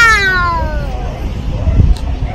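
A young girl's long, drawn-out shout, sliding down in pitch and fading out about a second in, followed by a low rumbling noise.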